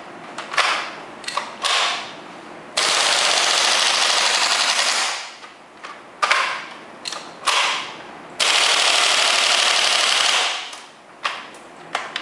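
WE G39C gas-blowback airsoft rifle firing. A few short bursts come first, then a full-auto burst of about two seconds. More short bursts follow, then a second full-auto burst of about two seconds, and a few single sharp shots near the end.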